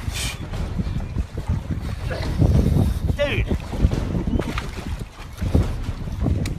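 Wind buffeting the microphone on a small boat on choppy open water, a gusty low rumble throughout. A short vocal exclamation about three seconds in.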